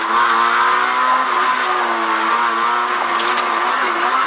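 Fiat Seicento Kit Car rally engine heard from inside the cabin, pulling in second gear at fairly steady revs. The pitch rises slightly at first, dips briefly about a second in, then holds.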